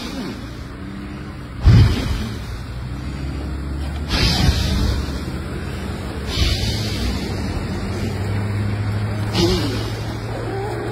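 Overheating electric bike battery pack venting smoke: sudden bursts of hissing about every two to three seconds over a steady low hum.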